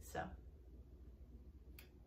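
A single short click about three quarters of the way in, over a faint steady low hum.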